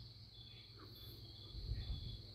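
Crickets chirping faintly and steadily, with a short low rumble about one and a half seconds in.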